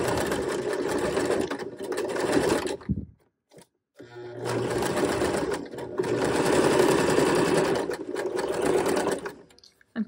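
Electric home sewing machine stitching through a folded fabric casing. It runs for about three seconds, stops for about a second, then runs again for about five seconds, briefly easing twice, and stops just before the end.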